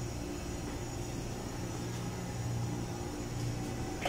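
Steady low hum of the ship's running machinery, an even drone that does not change.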